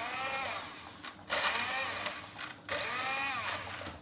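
Electric hand blender pureeing softened boiled tomatoes in a metal pot, running in three bursts with two brief breaks, its motor whine rising and falling in pitch within each burst as the blade meets the chunks.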